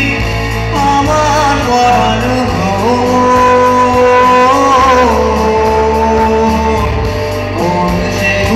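A man singing a Bengali song into a microphone, accompanied live on electric guitar, with a sustained bass underneath. The vocal line bends through a few quick turns, then holds one long note for a second and a half before moving on.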